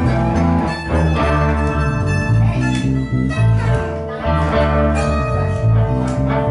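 A small live band of electric guitars and bass guitar playing an instrumental passage without singing: a bass line moving under guitar lines.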